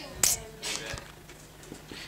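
Marker on a whiteboard: a sharp tap about a quarter of a second in, then a few short scratchy writing strokes.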